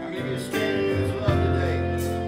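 Live country-style worship band playing: strummed acoustic guitar with electric guitar, steel guitar and drums, and a drum hit a little past the middle.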